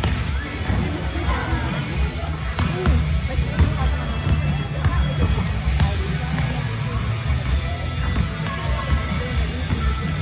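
A basketball being dribbled on a hardwood gym floor during play, with players' sneakers squeaking briefly many times.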